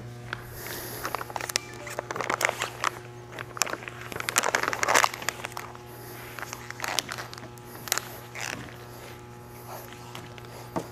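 Tape being pulled off a roll and wrapped around a plastic sleeve on a pipe packer, with the plastic crinkling, in a series of short pulls, the longest about four to five seconds in.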